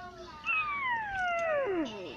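A high-pitched, cat-like cartoon cry that starts about half a second in and slides steadily down in pitch over about a second and a half.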